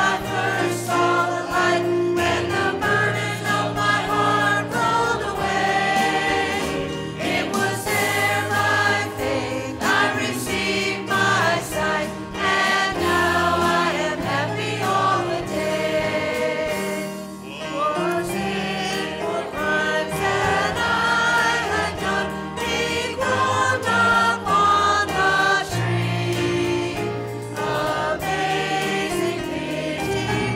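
A mixed church choir of men and women sings a gospel hymn with bass guitar accompaniment. There is a brief lull between phrases a little past halfway.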